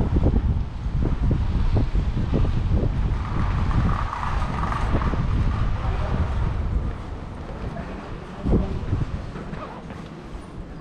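Wind buffeting the microphone of a walking action camera as a low, uneven rumble, over the ambience of a narrow city street with faint passing voices.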